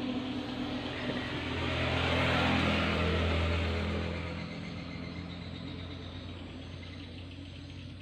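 A motor vehicle passing by: its engine hum builds over the first couple of seconds, peaks around three seconds in, then fades away.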